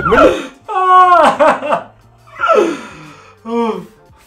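A voice making three drawn-out exclamations, each sliding down in pitch; the first and longest is about a second long.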